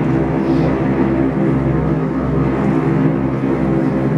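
Symphony orchestra playing a steady, sustained low passage carried by the cellos and low strings, with the violins silent.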